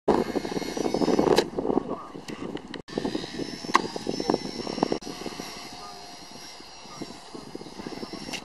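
Micro RC helicopter with a brushless motor flying: a high, steady motor-and-rotor whine that rises slightly in pitch, with a loud rushing noise in the first two seconds and scattered sharp clicks.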